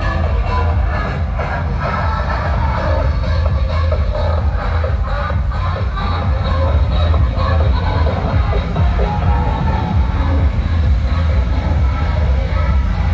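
Loud electronic dance music with a heavy bass, played through the roof-mounted loudspeakers of pole-dancer parade jeeps.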